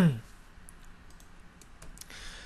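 About half a dozen light, scattered clicks of a computer keyboard and mouse as a ticker symbol is typed in. A man's voice trails off at the very start.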